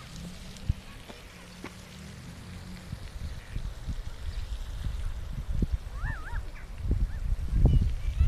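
Outdoor park ambience dominated by wind rumbling on the microphone, stronger towards the end, over a faint steady wash of noise. A short wavering call rises and falls twice about six seconds in.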